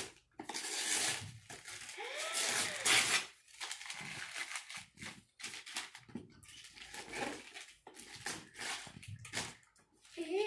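Wrapping paper being torn and crumpled by hand as a present is unwrapped: irregular rips and paper rustles, some long, some short.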